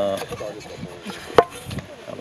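A single sharp knock about one and a half seconds in: a camp frying pan striking the plastic cutting board on a wooden table as the pizza is tipped out of it.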